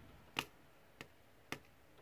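Diamond painting pen tapping square resin drills onto the sticky canvas: sharp light clicks about half a second apart, three in a row with a fourth right at the end.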